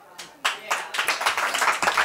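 Audience applauding, the clapping starting about half a second in after a brief hush.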